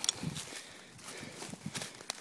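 Footsteps pushing through undergrowth and leaf litter: irregular crackling and brushing of leaves and twigs, with a sharp snap right at the start.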